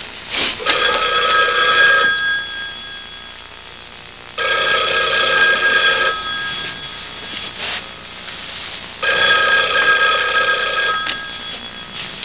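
Landline telephone bell ringing, three rings of about two seconds each with pauses of a few seconds between them.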